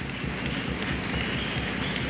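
Audience clapping and applauding, a dense patter of many hands. A faint high steady tone comes in about a second in.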